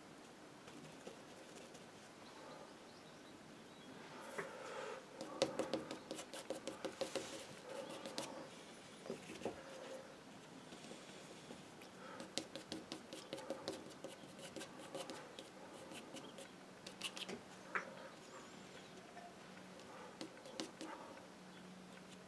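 Bristle paintbrush dabbing and scrubbing acrylic paint onto paper: faint, quick taps and scratches in three spells.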